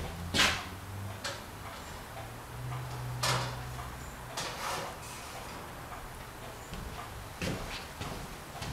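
Workshop background: a low steady hum with a handful of sharp knocks and clicks. The loudest knocks come about half a second in and about three seconds in.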